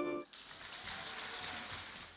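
A held accordion chord breaks off abruptly a quarter of a second in. It leaves a faint, even hiss with no notes in it.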